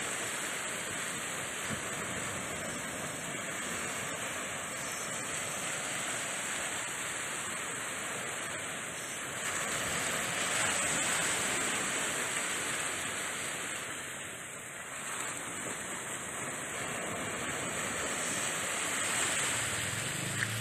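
Ocean surf breaking and washing up a beach: a steady rush of waves that swells louder for a few seconds around the middle, then eases.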